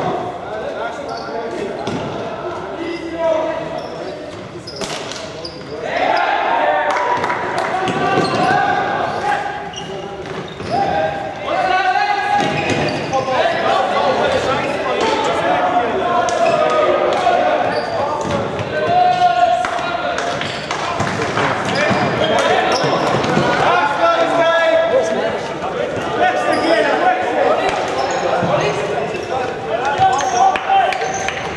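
Floorball game in a large, echoing sports hall: players' voices calling and shouting across the court, with scattered sharp knocks of sticks hitting the plastic ball.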